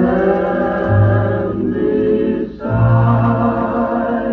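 A 1941 big-band 78 rpm shellac record playing on a turntable: the orchestra with a vocal group singing sustained harmony, over long held low notes.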